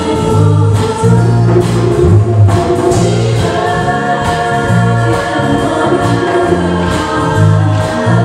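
Choir singing held chords over a band, with a strong bass line moving in a steady repeating pattern underneath.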